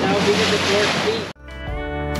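Rushing wind and water noise from a moving small open motorboat, with a wavering hum over it, cut off suddenly about a second and a half in. Guitar music starts right after.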